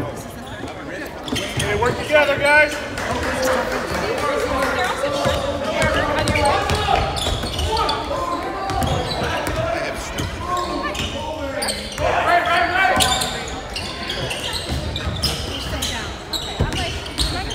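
Basketball being dribbled on a hardwood gym floor during a game, the ball's repeated bounces echoing in the hall, under the steady talk and shouts of spectators close by.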